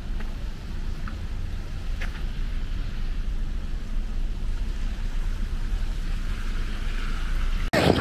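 Wind buffeting an outdoor camera microphone: a steady low rumble.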